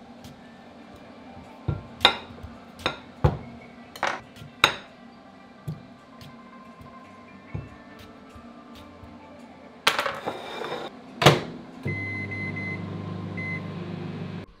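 Knife and plate clinking on a kitchen worktop as a jacket potato is cut. Near the end a microwave door shuts with a clunk and several short keypad beeps follow. The microwave oven then starts up with a steady hum.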